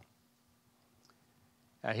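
Near silence in a pause of a man's speech, with a faint steady low hum and a faint click about halfway through; his voice comes back near the end.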